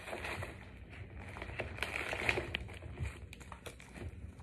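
Paper seed packets being handled and sorted, giving an irregular crinkling rustle with scattered small crackles that is busiest about halfway through.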